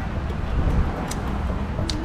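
A man gulping beer from a can against a steady low rumble, with a short click near the end.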